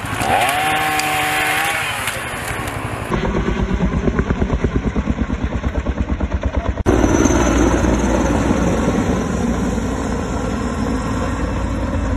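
Aircraft noise overhead in edited segments: a rising, then level engine whine, then a fast pulsing beat of about five a second, then from about seven seconds in a steady low rumble of a firefighting aircraft passing over.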